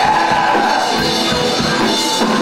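Live rock band playing loud and without a break: electric guitar and drum kit with a vocalist singing into a microphone.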